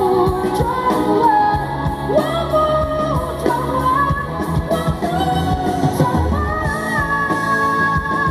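Female vocalist singing a Mandarin pop-rock song live with a band, electric bass and drums under her voice. She holds long notes in the second half.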